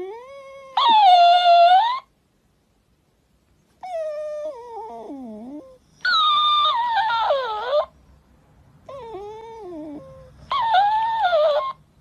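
Shiba Inu puppy whining in long, wavering cries. Each cry is answered by a louder, higher-pitched copy from a plush mimic toy that repeats what it hears, three exchanges in all.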